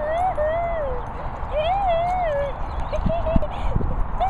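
High, wavering vocal calls: two long ones that rise and fall in pitch, then a few short ones, with a few low thumps near the end.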